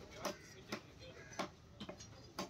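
A heavy knife chopping through catla fish and striking a wooden log chopping block: four sharp knocks, irregularly spaced.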